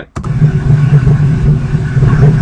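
Recorded background noise played back: a steady low hum with an even hiss over it, which the speaker puts down to his computer humming, or just general noise, in his basement. It starts a moment in.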